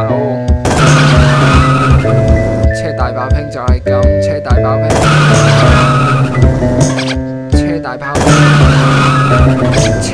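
Music with a steady beat, overlaid three times with a car sound effect: tire squeal and engine noise, each burst lasting one to two seconds.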